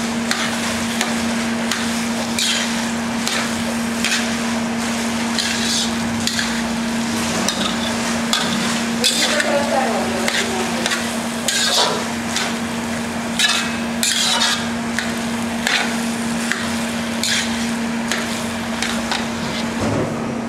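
A metal spatula stirring and scraping spiced boiled potatoes around a steel kadai in irregular strokes about a second apart, with the food sizzling lightly in the pan. A steady hum runs underneath.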